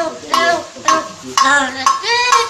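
A parrot making about four short, pitched, wavering vocal sounds in quick succession.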